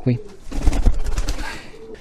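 Domestic pigeons cooing in a loft, with a loud rush of noise and low rumble from about half a second in to about a second and a half.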